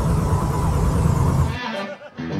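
Loud handling rumble from a camcorder being moved, with a deep low rumble and a hiss over it, cutting off abruptly about a second and a half in.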